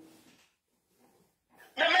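A man's voice trailing off, then a gap of about a second and a half with almost no sound, and speech starting again near the end.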